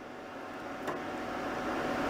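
Steady hum and hiss of a running off-grid inverter, with a faint steady tone and one light click about a second in as multimeter probes are set on its terminals.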